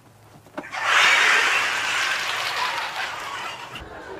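Studio audience laughing. The laughter breaks out about a second in and slowly dies away toward the end, after a brief knock.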